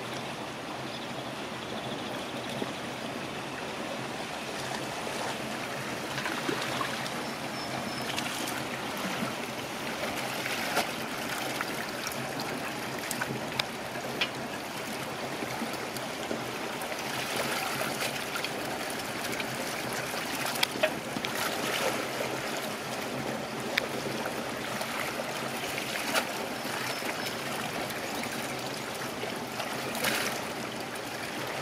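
Steady splashing and running water, with a low steady hum underneath and scattered sharp splashes. This is the sound of fish being netted in a hatchery raceway and fed through a fish-pump hopper.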